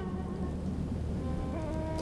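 Soft background score of held, sustained notes, with a small change of pitch near the end.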